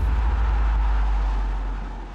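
Deep, steady rumble of a countdown-transition sound effect with a hiss above it, fading toward the end.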